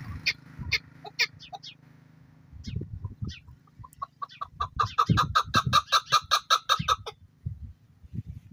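Chukar partridge calling: a few scattered short notes at first, then from about four seconds in a fast run of clucking 'chuk' notes, about seven a second, lasting some three seconds.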